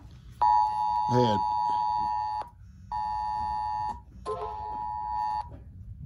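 Emergency alert attention signal from a phone: a steady two-note tone sounding once for about two seconds, then twice more for about a second each with short gaps, announcing an endangered child alert.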